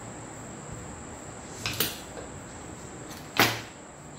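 Short knocks of objects being handled and set down on a hard work surface: a quick double knock a little under two seconds in and a louder single knock about three and a half seconds in, over a faint steady high-pitched whine.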